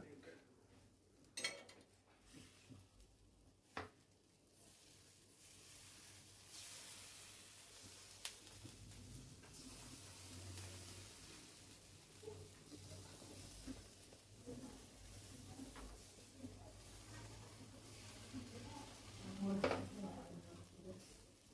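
Faint sizzling of food frying in a pan, louder from about five seconds in, with a few light clinks of a utensil against cookware.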